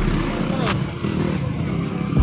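Motocross dirt bike engines running on the track, with crowd voices mixed in.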